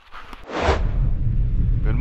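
A whoosh about half a second in, fading into a heavy, steady low rumble.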